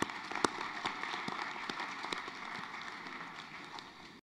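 Audience applauding, with one pair of hands clapping louder about twice a second over the crowd's clapping; the applause slowly fades toward the end.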